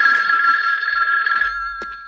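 A telephone bell rings once: a steady ring for about a second and a half that then dies away. There is a short click near the end.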